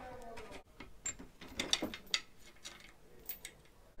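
Scattered light metal clicks and clinks from an anchor shackle and chain being worked at a bench vise, most of them about two seconds in.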